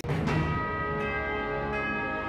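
Logo sting music for a news channel's outro: sustained bell-like chime tones ringing over a low rumble, with a fresh strike about a second in.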